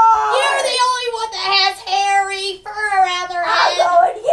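A child's high-pitched voice singing in a drawn-out sing-song, with several long held notes.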